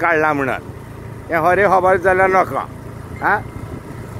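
Talking in short stretches over the steady low hum of a vehicle engine running.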